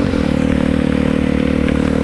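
Motorcycle engine running at a steady pitch while cruising, under a steady hiss of wind and rain on a wet road.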